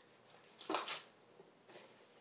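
Cardboard packaging handled on a table: one short scuff just under a second in, a fainter one near the end, and faint room tone between.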